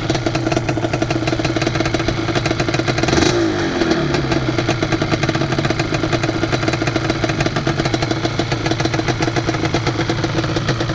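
ATV engine idling steadily, with one quick throttle blip about three seconds in that falls back to idle.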